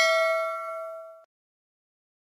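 A bell 'ding' sound effect, the chime for the notification bell in a subscribe animation. It rings with several clear pitches, fades, and cuts off abruptly a little over a second in.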